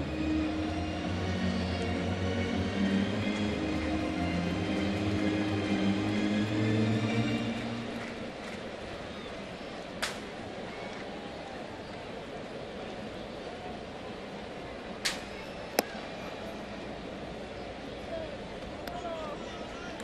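Ballpark crowd murmur under held, stepping notes of stadium music for about the first eight seconds, after which only the crowd murmur goes on, with a few sharp pops.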